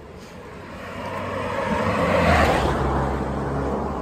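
A motor vehicle driving past fast and close. Its engine and tyre noise swell to a peak a little past two seconds in, then ease off slightly.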